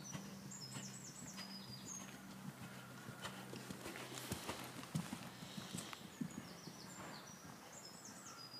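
A horse's hoofbeats, soft and muffled on the sand arena surface, as it moves around the arena. They are louder around the middle as the horse passes close by.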